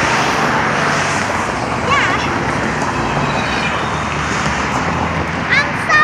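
Road traffic on a busy street, a steady rush of passing vehicles, with one going by close in the first second.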